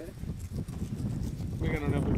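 Low, steady outdoor rumble with a man's voice starting near the end.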